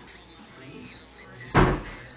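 A single loud thud about one and a half seconds in, over quiet background music.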